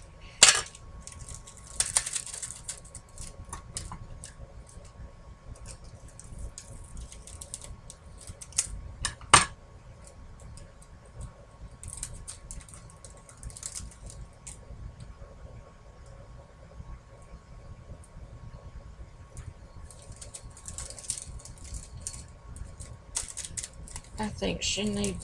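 Small craft tools and pieces being handled on a tabletop: scattered light clicks and taps, two sharper knocks about half a second and nine seconds in, and a few brief rustles, over a faint steady hum.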